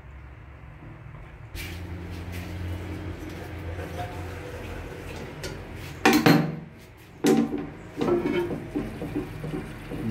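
Hard clunks and scrapes of a ceramic toilet cistern lid being handled and lifted off. There is a loud knock about six seconds in, another just after seven, and a run of smaller knocks near the end.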